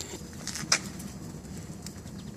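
Quiet outdoor background noise with a single sharp click a little under a second in.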